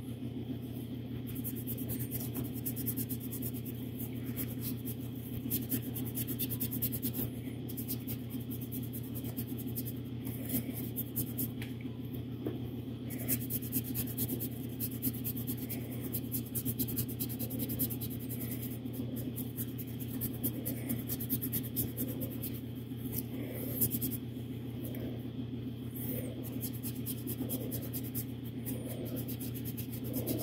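Irregular scratching and rubbing strokes as a metallic finish is worked by gloved hand into the detail of a small sculpted statue helmet, over a steady low hum.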